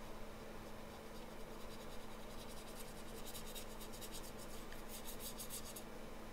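Small round watercolor brush stroking over wet watercolor paper: a faint run of quick, scratchy strokes, about four a second, starting about two seconds in and stopping near the end.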